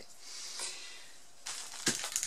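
Spray of liquid silicone from an aerosol can: a high hiss lasting about a second and a half that fades out, followed shortly before the end by a single sharp knock.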